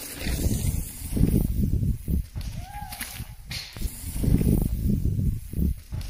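Mountain bikes rolling down a dirt trail, under a gusty low rumble of wind on the microphone, with a sharp click about three and a half seconds in.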